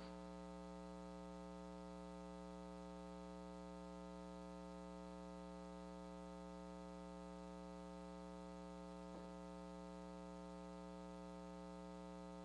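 Faint, steady electrical mains hum with its even ladder of overtones, unchanging throughout; no shot or ball sounds come through.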